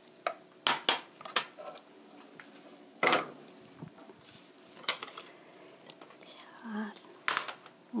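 Wooden spatula clicking and scraping against a frying pan and a ceramic bowl in a few sharp knocks, then a louder knock about three seconds in as the bowl is set down on a glass tabletop. A few lighter clicks follow.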